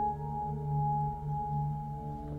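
Background music score of sustained, bell-like ringing tones held steady, throbbing slowly in loudness.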